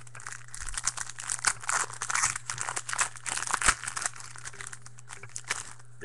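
A trading card pack's wrapper being torn open and crinkled in the hands: a dense crackle for about four seconds that thins to a few scattered crinkles near the end.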